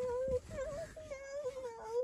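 A toddler whining in protest at being told to get out of the truck: one long, wavering, high-pitched wail that breaks off briefly about half a second in, then carries on, dipping and rising, to the end.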